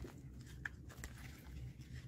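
Faint handling of a ring binder: a sharp click as the metal rings are worked, then quiet paper handling over a low steady hum.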